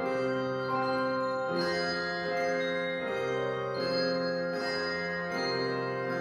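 Handbell choir playing a prelude: chords of ringing bells, a new chord struck a little under once a second, each sustaining into the next.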